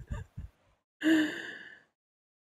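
A person's breathy laughter trailing off, then a single sigh about a second in that fades away.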